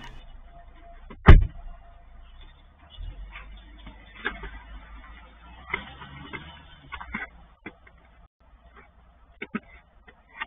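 A car door shutting with one loud thump about a second in, then scattered knocks and scrapes of a long-handled ice chopper chipping at packed ice and snow beside the car, heard through a security camera's microphone.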